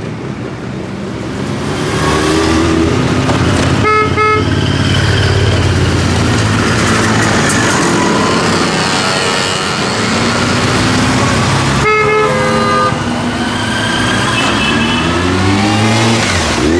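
Motorcycle engines running and revving as bikes ride past one after another, their pitch rising and falling. A horn toots in a quick series of short honks about four seconds in, and again around twelve seconds.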